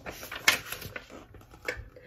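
A page of a paperback picture book being turned: paper rustling, with a sharp flap about half a second in and a smaller one near the end.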